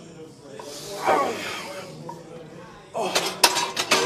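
A man straining through a bench-press rep to failure, a hissing, groaning breath whose pitch falls. Near the end comes a quick run of sharp knocks and clatter.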